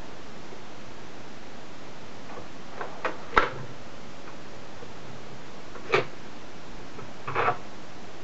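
A few short knocks and clunks from handling a sliding miter saw and pieces of wood between cuts, the loudest about three and a half seconds in, with no saw motor running.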